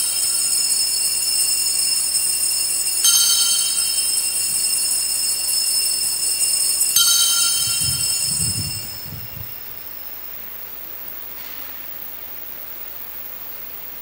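Altar bells rung at the elevation of the host during the consecration: the ringing is already sounding, is struck afresh about three seconds in and again about seven seconds in, then dies away by about the tenth second, leaving quiet room tone.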